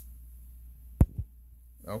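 Two dull thumps about a second in, a fraction of a second apart, over a steady low hum, with a short click at the very start.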